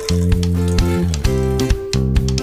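Background music: sustained pitched notes over a steady bass, changing every half second or so, with sharp plucked attacks.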